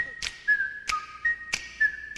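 Music: a whistled melody of held notes that slide from one pitch to the next, over a drum beat that hits about every two-thirds of a second.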